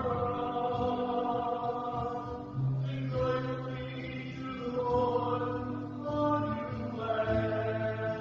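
Sung responsorial psalm: a singer chanting in long held notes over sustained instrumental chords, the notes changing every second or two.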